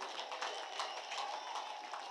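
Faint, scattered hand clapping and crowd noise from a large rally audience: many short, irregular claps over a low murmur.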